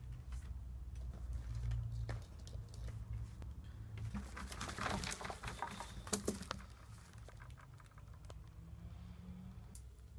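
Pencil scratching on paper and light clicks from a pencil and paper being handled at a desk, busiest about halfway through, over a steady low room hum.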